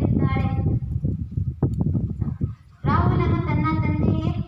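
A girl's voice amplified through a microphone, giving way about a second in to roughly two seconds of irregular low knocks, then a short lull before the voice comes back strongly.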